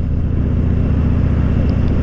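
Harley-Davidson Dyna Fat Bob's V-twin engine running steadily at cruising speed, heard from the rider's seat with a rush of wind noise over it.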